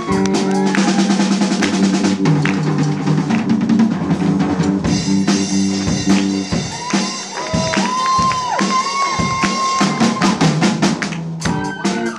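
Live rock band in an instrumental break: a Mapex drum kit plays busy snare and cymbal fills under a held guitar chord. About halfway through, the guitar turns to sliding, bent lead notes over the drums.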